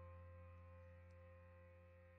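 Near silence: faint, steady held tones from the band's amplified guitar rig slowly dying away, with a low hum underneath.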